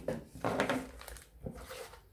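Plastic packaging crinkling and rustling as it is handled, with a single light knock about one and a half seconds in.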